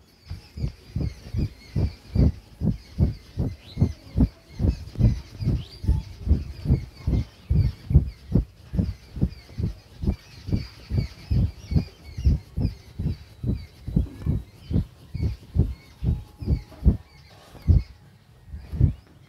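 A steady run of short, dull thumps, about two or three a second, that stops near the end. Small birds chirp faintly in the background.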